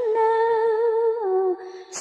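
A chanting voice holds the last syllable of a sung line of Vietnamese Buddhist verse on one long note with a slight waver. It steps down a little about a second in and fades out about halfway through.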